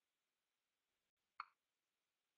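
Near silence, with one faint short click about one and a half seconds in.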